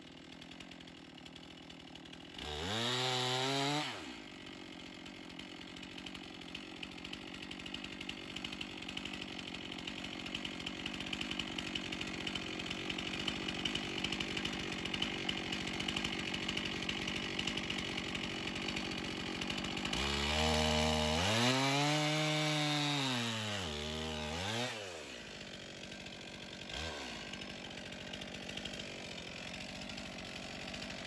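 Chainsaw revving up briefly, then running steadily as it plunge-cuts a hole through a dock log, before revving high and dropping back twice near the end.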